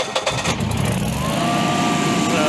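Carrier-branded Generac home standby generator's engine cranking on its starter and catching about half a second in. It then runs up to speed and settles into a steady run, with a steady whine coming in about a second in.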